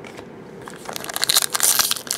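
Foil wrapper of a trading-card pack crinkling and crackling as hands pull it open, starting about a second in.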